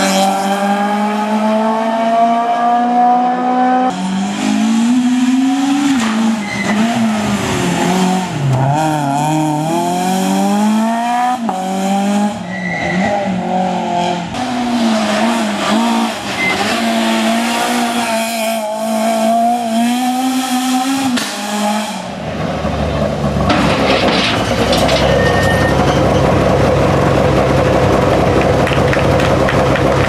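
Citroën C2 rally car's engine revving hard as it passes at speed, the pitch climbing and dropping through gear changes and lifts, in several clips joined together. About three-quarters of the way through it gives way to a steady low hum with outdoor crowd noise.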